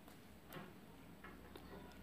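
Near silence: room tone, with one faint short click about half a second in and a couple of fainter ticks later.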